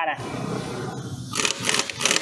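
Bluepoint AT5500C half-inch air impact wrench hammering on a scooter's front axle nut for about a second. A few sharp hissing bursts follow near the end.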